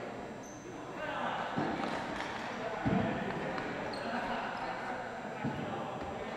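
Indistinct voices of ball hockey players echoing in a gymnasium, with three short thuds on the hardwood floor; the loudest comes about three seconds in.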